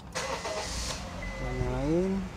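Honda Freed's 1.5-litre four-cylinder engine being started: about a second of starter cranking as it fires, then settling into a low-pitched run.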